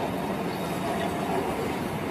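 Steady outdoor background noise, an even hum with no distinct events.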